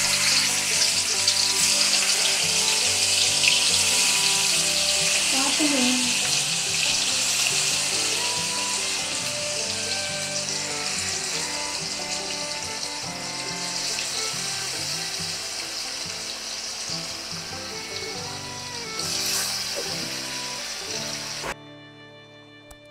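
Marinated chicken leg pieces sizzling in shallow hot oil in an iron kadai. The sizzle is loudest just after the pieces go in, slowly dies down, and cuts off abruptly near the end.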